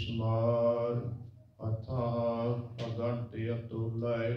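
A man's voice chanting slowly into a microphone. He sings a devotional recitation in long, held phrases with short breaths between them.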